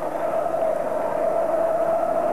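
Steady stadium crowd noise from a football match, a constant din with no single shout or whistle standing out, heard through an old television broadcast recording.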